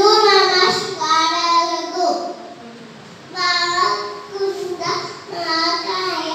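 A young boy chanting Sanskrit shlokas in a sing-song voice into a microphone, with a short pause about halfway through.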